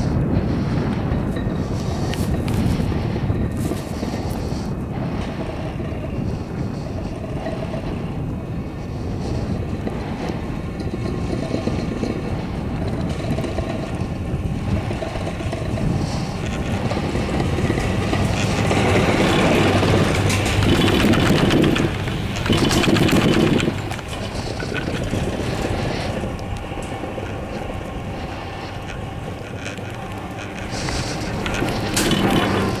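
Ride noise on the Kensho SuperChair, wind buffeting the microphone over the running of the lift. A louder rumble builds just past the middle and lasts several seconds as the chair passes a lift tower and runs over its sheave wheels, then drops off suddenly.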